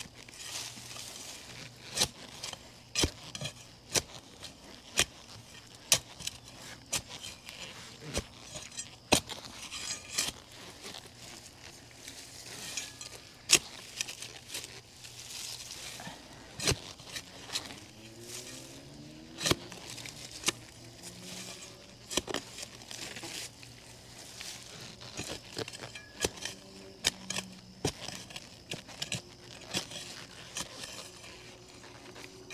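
Shovel digging a planting hole: sharp strikes and scrapes of the blade going into soil and roots, about one a second at an irregular pace, with gritty crunching between strikes.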